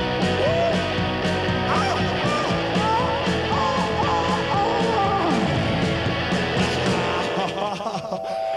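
Live rock band playing, with electric guitar and drums on a steady beat. Over it a voice slides up and down in pitch.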